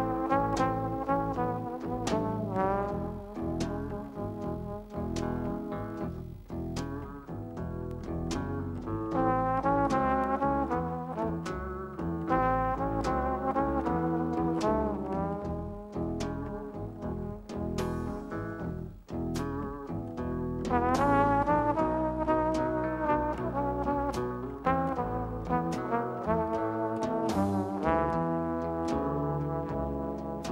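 Live jazz quartet playing a blues: a trombone leads the melody with wavering, vibrato-laden notes over double bass, guitar and a steady beat on the drums.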